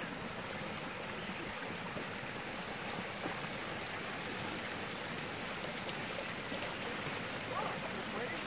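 Water running and splashing steadily over the tiers of a small stone garden fountain, spilling from basin to basin.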